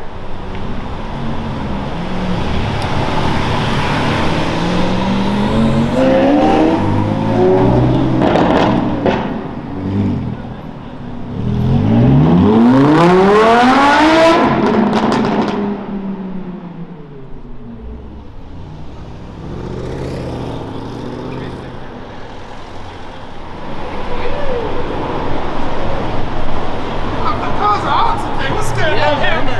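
Supercar engines accelerating hard on a city street: a first run rising in pitch a few seconds in, then the loudest near the middle, a Lamborghini Huracán's V10 pulling away with rising pitch and fading into the distance.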